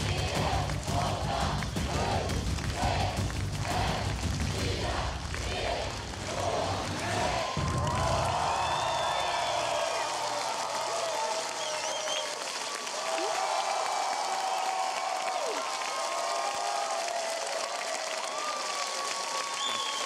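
Tense game-show countdown music with a pulsing, bass-heavy beat, cut off by a sharp hit about seven and a half seconds in. Then a studio audience cheers and applauds.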